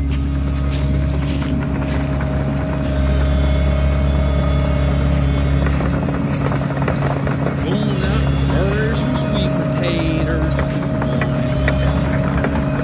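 Case tracked excavator's diesel engine running steadily, a constant low drone with a steady hum over it.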